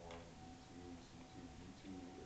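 A man lecturing, his voice faint in a small room, with a thin steady tone underneath.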